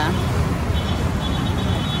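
City road traffic: motorcycle and car engines running as they pass close by, a steady low rumble. A faint high-pitched whine is heard for about a second midway.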